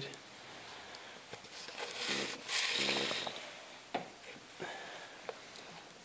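A short breathy vocal sound, like a snort or soft laugh with a brief hum, about two seconds in. It is followed by a few light clicks and knocks as the slipped clay beaker is lifted off the wheel and handled.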